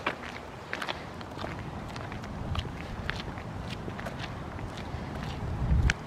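Footsteps on a concrete walkway: irregular taps and scuffs of people walking, with a low rumble building near the end.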